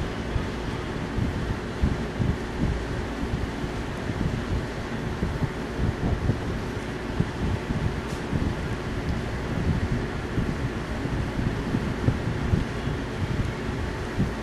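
Steady background noise: a hiss with an uneven low rumble and a faint steady hum.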